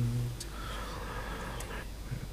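A man's chanting voice holds a low note that ends about half a second in, followed by faint murmuring of quiet prayer in the sanctuary.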